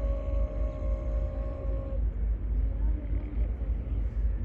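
A single long held call or note, steady in pitch after a short rise, carrying for about two seconds before it stops, over a constant low rumble. A fainter, lower call follows near the end.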